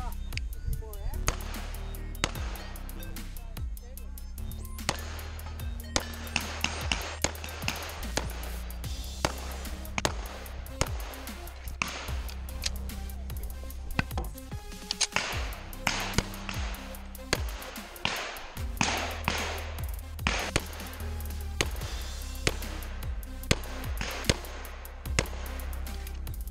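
Pistol shots from a Sig Sauer 1911 in .45 ACP, fired in quick, irregularly spaced strings throughout, over background music with a steady bass line.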